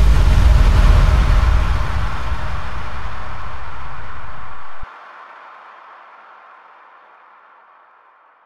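Outro effect of an electronic house track: a deep low rumble under a wash of white noise, both fading. About five seconds in the low end cuts off suddenly, leaving the noise to die away.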